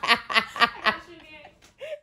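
A woman laughing: a run of about five short bursts of laughter in the first second, dying away after that.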